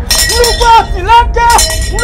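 Rhythmic wordless vocal chanting, pitched calls rising and falling several times a second, mixed with bright clinking strokes.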